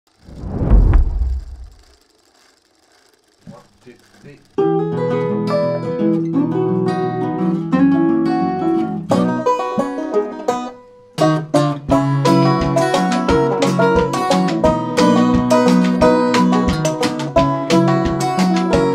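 Acoustic country blues played on acoustic guitars, banjo and lap steel guitar, starting after a spoken count-in about four seconds in, with a low boom before it. The strings break off briefly near the middle, and from about twelve seconds a steady kick-drum beat joins them.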